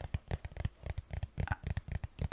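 Fingers tapping on the cover of a hardcover notebook, a quick, irregular run of light taps, several a second.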